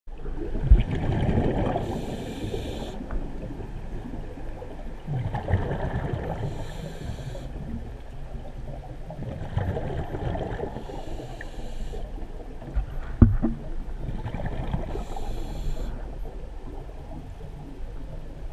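Scuba regulator breathing heard underwater: a rumble of exhaled bubbles, then a hissing inhale through the regulator, about once every four seconds for four breaths. Two sharp knocks stand out, one near the start and a louder one about two-thirds of the way through.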